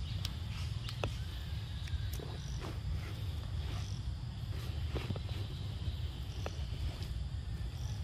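A steady high insect chorus over a constant low rumble, with a few sharp faint clicks scattered through.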